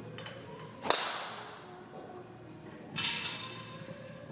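A driver strikes a golf ball off a tee with one sharp crack and a short ringing tail, about a second in. The shot was hit solidly, at about 110 mph clubhead speed. A softer, longer rustling thud follows about three seconds in.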